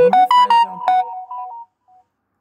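Smartphone notification tone for incoming WhatsApp Business messages: a short melodic jingle of several quick pitched notes that fades out after about a second and a half.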